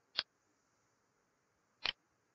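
Computer mouse clicking: one sharp click shortly after the start, then a quick double click near the end, over a faint hiss.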